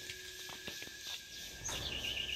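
Faint outdoor ambience: scattered light footsteps scuffing on dry leaves and dirt, with a bird chirping near the end.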